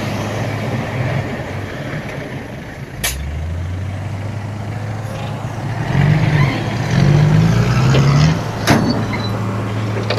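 Diesel engine of a Komatsu D31P crawler bulldozer working under load, its pitch rising and falling in a louder stretch about six to eight seconds in as the blade pushes soil, with a dump truck's engine running alongside. Two sharp, brief noises cut through, about three seconds in and again near the end.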